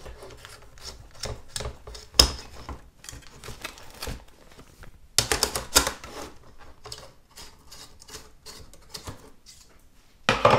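A plastic embroidery hoop being unclipped and the project pushed out of it, with stiff stabiliser and vinyl crackling: a string of irregular clicks and crackles, loudest about two seconds in and again around five to six seconds.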